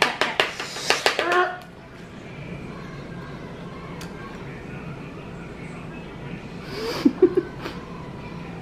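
A spoon tapping quickly on a paper plate, about six taps a second, with a voice over it, stops about a second and a half in. After that there is only quiet room tone with a faint low hum.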